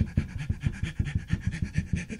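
A man panting rapidly, about seven short puffs a second, voicing a hurrying puppet character.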